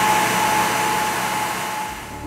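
Grizzly automatic edgebander running: a steady whirring hiss with a constant high whine, fading away near the end.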